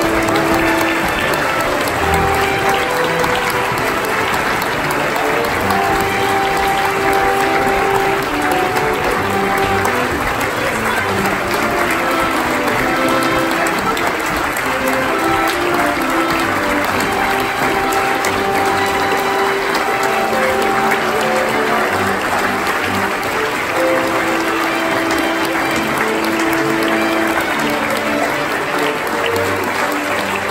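A crowd clapping continuously, with music of long held notes playing underneath.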